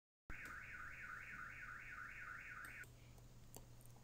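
An electronic warbling tone, sweeping up and down about three times a second like a car alarm or siren. It starts suddenly after a moment of dead silence and cuts off after about two and a half seconds.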